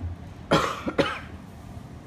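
A person coughing twice in quick succession, the coughs about half a second apart.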